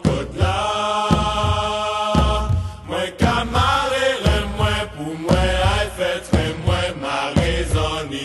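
A song: a voice singing a chant-like melody over a deep drum beat that falls about once a second.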